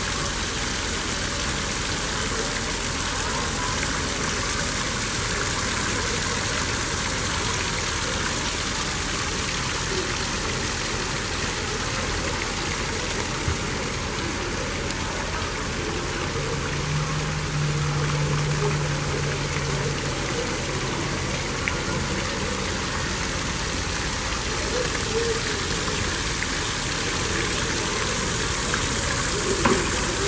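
Steady rushing noise like running water, with a low hum that rises briefly about halfway through.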